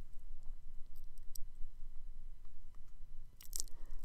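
A pause in a voice-over: a low, steady hum with a few faint clicks, and a short faint breath-like sound near the end.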